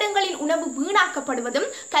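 A girl speaking, over a steady high-pitched cricket trill.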